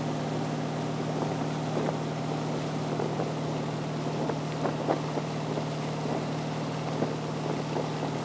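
Tow boat's engine running at a steady speed with a constant low hum, over the rush of its wake and wind on the microphone. A few short slaps or knocks come through near the middle.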